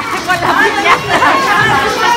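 Several people talking over one another in lively chatter, with music playing in the background.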